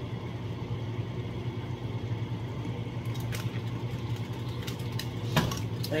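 A steady low mechanical hum from a running kitchen appliance, over the faint hiss of a pan simmering on the stove. A few faint clicks come in the second half, and a single knock about five seconds in.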